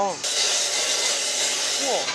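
Loud steady hiss of steam at a dumpling stall's steamer, starting suddenly and cutting off sharply about two seconds later. A woman says a short "oh" near the end.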